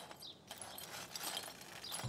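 Faint, scattered clicks and scrapes of broken clay flowerpot pieces being swept with a brush into a dustpan.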